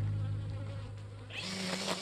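Background music fades out. About one and a half seconds in, a DeWalt cordless electric string trimmer comes in, running with a steady hum as its line cuts tall grass.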